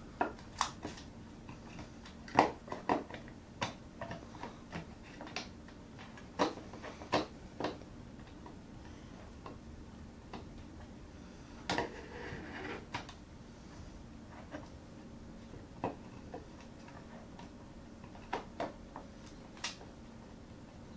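Irregular small clicks and taps of parts and a small tool handled inside the open aluminium case of a 2011 Mac Mini while it is reassembled and its screw holes are lined up. The loudest tap comes about two and a half seconds in, with more clusters of clicks around six to seven seconds and around twelve seconds.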